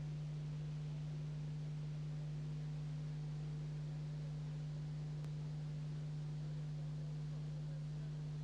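Steady electrical hum on an old video-tape soundtrack: one low unchanging tone with fainter overtones above it, and nothing else heard over it.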